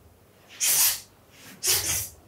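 Two sharp, hissing bursts about a second apart as two young karateka strike the moves of the kata Heian Shodan in unison, each burst marking a technique.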